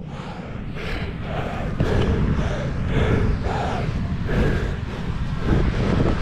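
A Cape fur seal colony calling all around: a dense chorus of many overlapping calls, with a steady low rumble of wind on the microphone underneath.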